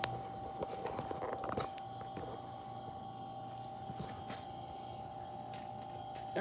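Handling noise of a camera being mounted back on a tripod: rustling and several small clicks and knocks in the first two seconds, then only faint movement over a steady quiet hum.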